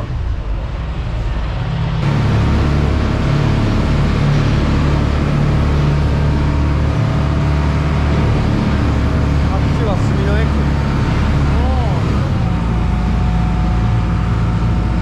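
A small river ferry's engine steps up in loudness about two seconds in as the boat gets under way, then runs steadily at cruising speed with a deep, even drone.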